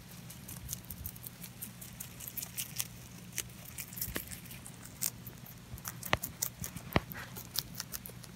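Pet rabbit chewing leafy greens close to the microphone: fast, irregular crisp crunching clicks, louder in the second half.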